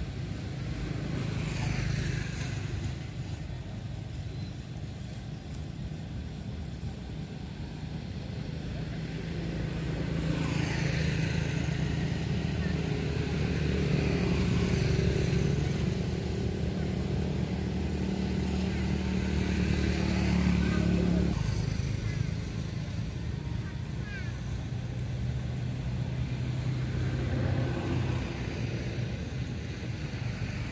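An engine running steadily with a low hum, louder through the middle and cutting off suddenly about two-thirds of the way in.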